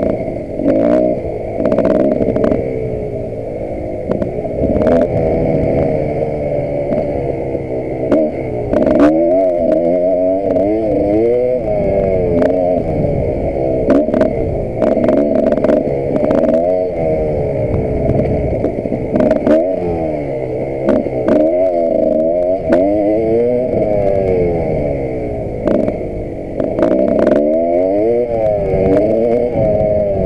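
KTM 525 EXC single-cylinder four-stroke enduro motorcycle being ridden hard on a dirt track, its engine revs rising and falling again and again as the rider accelerates and shifts. Sharp clattering knocks from the bike over the rough ground come through many times.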